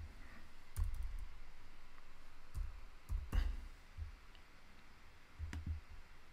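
A few computer keyboard keystrokes and mouse clicks, scattered with pauses between them, as a value is typed into a form field.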